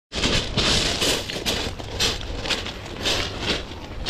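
Footsteps at about two steps a second, each a short scuffing crunch, over a steady low rumble.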